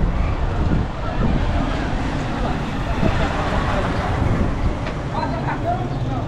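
Street noise on a cobbled town street: a steady low rumble of wind on the microphone and vehicle noise, with voices of people nearby heard faintly about five seconds in.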